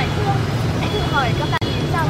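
A young woman talking over a steady low rumble of street traffic, with a momentary dropout in the sound about one and a half seconds in.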